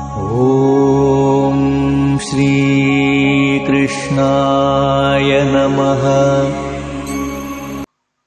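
A devotional Hindu mantra sung in long held notes over a steady musical drone. It cuts off abruptly near the end.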